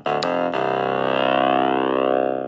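Artiphon Orba 1's built-in synth played from its touch pads: two quick note attacks, then a held note whose tone sweeps slowly as the device is tilted, the same effect as turning a mod wheel.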